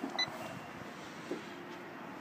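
A Garmin GPSmap 498 chart plotter gives a short electronic beep just after the start as it is switched on. Otherwise there is only quiet background hiss, with a soft tick past the middle and a faint steady hum.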